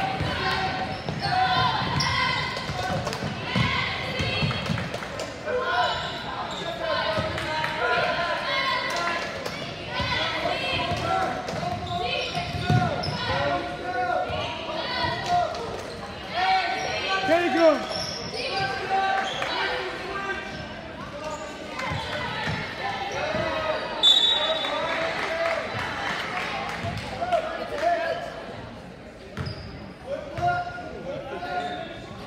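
Basketball game on a hardwood gym floor: a ball bouncing as it is dribbled and sneakers squeaking, under spectators' voices echoing in the gymnasium. A brief high shrill tone sounds a little past the middle.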